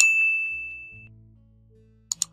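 Mouse-click sound effect followed by a single bright bell ding that rings out and fades over about a second, over quiet background music.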